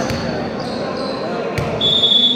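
A volleyball bounces once on the wooden floor of a sports hall about one and a half seconds in, amid voices in the echoing hall. A steady high-pitched tone starts just before the end.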